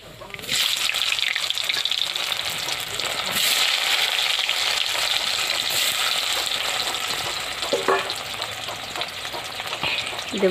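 Pieces of boiled potato going into hot oil with nigella seeds in a kadai, sizzling loudly. The sizzle starts about half a second in as the first pieces go in, and continues as more are added by hand.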